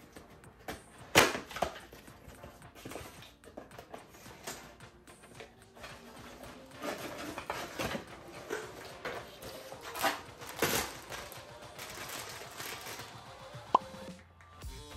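Cardboard figure box and its plastic packaging being opened and handled: irregular rustling and crinkling with scattered sharp clicks and snaps, the loudest about a second in and again near the end, over soft background music.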